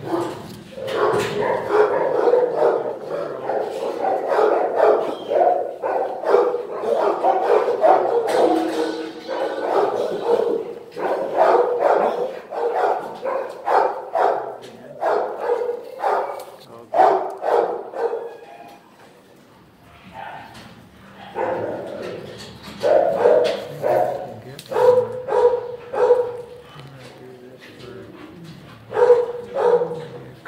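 Shelter dogs barking over and over, one bark after another, easing off for a couple of seconds about two-thirds of the way through before starting up again.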